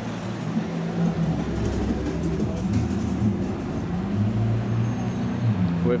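Street traffic: engines idling and running steadily, with a deeper low rumble from about one to five seconds in.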